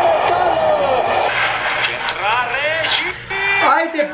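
Mainly speech: an excited man's voice rising and falling in pitch, over the steady background crowd noise of a televised football match.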